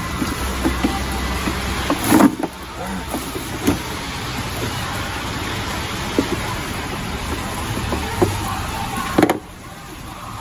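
Hands handling a plastic rear car bumper and its lamp fittings, giving about five scattered knocks and clicks over a steady background hum. The level drops sharply near the end.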